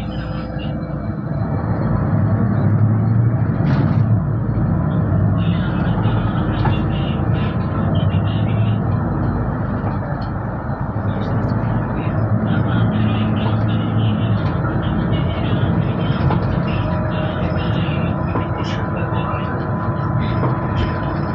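Interior of a Solaris Urbino 12 third-generation city bus under way: steady engine and road noise with a low rumble, growing a little louder about two seconds in, with frequent light clicks and rattles.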